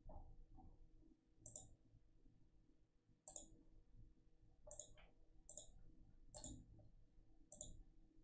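Faint, scattered clicks of a computer mouse, about seven in all, a couple of them in quick succession, over near silence.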